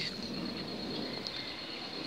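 Quiet outdoor background with a steady high-pitched tone throughout and one brief faint chirp a little past a second in.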